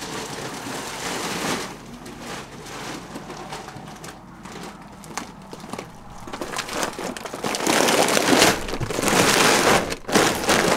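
Rustling, rubbing noise right on the microphone as a horse noses at the camera. The noise comes in irregular bursts and is loudest in the last two or three seconds.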